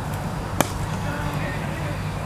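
A cricket bat striking the ball once: a single sharp crack about half a second in, over a steady low rumble.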